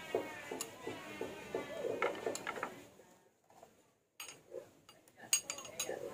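Sharp clicks and taps of kitchen utensils: a metal spoon against a ceramic plate and a knife cutting on a wooden board, a quick run of them near the end.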